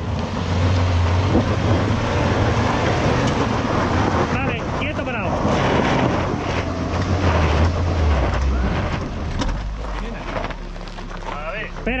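Suzuki Jimny JB74's 1.5-litre four-cylinder petrol engine revving under load as the 4x4 claws up a rough dirt slope, a wheel spinning and throwing up gravel and dust. The engine note drops lower and quieter near the end.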